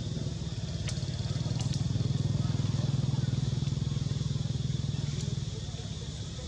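A motor vehicle's engine passing by: a low, pulsing drone that grows louder to a peak in the middle and then fades away.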